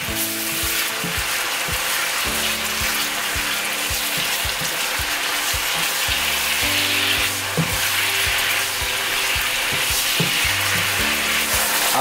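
Pork tocino sizzling steadily in its sauce in a nonstick wok while it is stirred and turned with a wooden spatula.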